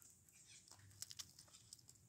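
Near silence: faint outdoor background with a few light ticks and rustles around the middle.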